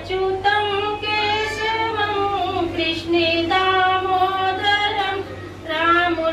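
A woman singing into a microphone in long, held notes, pausing briefly for breath about halfway through and again near the end.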